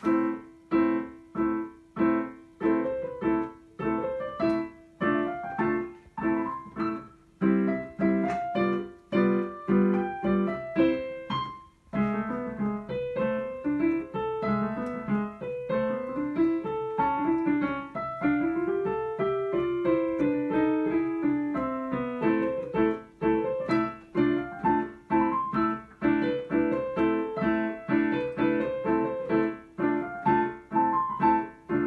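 Digital piano played: short repeated chords struck about twice a second, then, about twelve seconds in, quick runs of notes rising and falling over a steady lower line.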